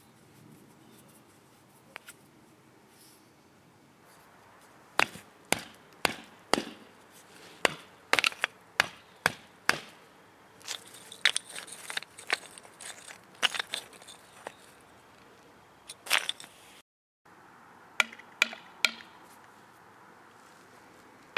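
Tungsten tip of a metal survival baton striking brick and stone: a string of sharp, hard knocks starting about five seconds in, with some scraping between blows, then three more knocks after a brief break near the end.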